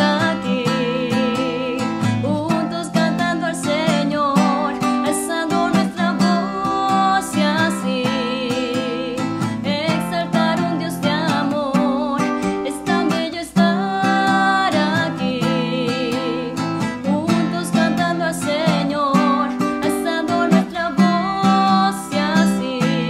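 A hymn played on acoustic guitar with a singing voice, the melody moving in repeated phrases.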